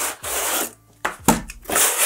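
Cardboard boxes scraping and sliding against each other and across a wooden desktop as inner boxes are pulled out of a retail carton. There are two scraping passes, with a knock about a second and a quarter in.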